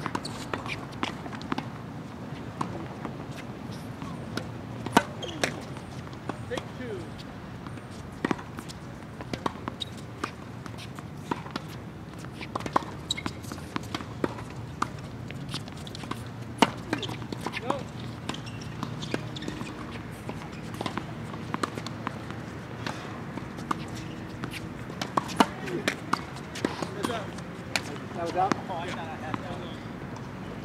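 Tennis balls bouncing on a hard court and being struck by rackets: sharp, irregular pops throughout, the loudest about 5, 16 and 25 seconds in, the middle one the serve, over a steady low hum.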